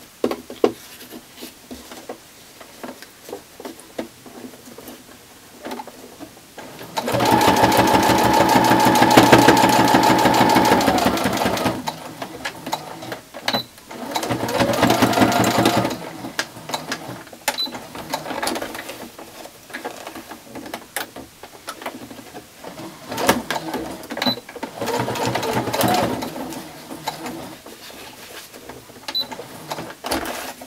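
Domestic sewing machine stitching binding onto a small quilted ornament in bursts: one long run of fast, even stitching about seven seconds in, then two shorter runs. Small clicks and handling knocks of the fabric and machine come between the runs.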